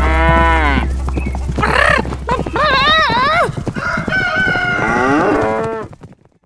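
Cartoon farm animal calls: a horse whinnying with a wavering call near the middle and a cow mooing, over a quick clatter of galloping hooves. The sound stops suddenly at the end.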